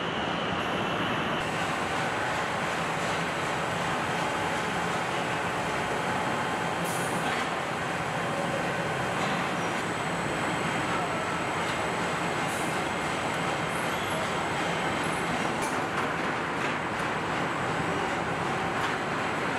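Steady mechanical din of a car assembly plant, with machinery and conveyors running and a few faint clanks.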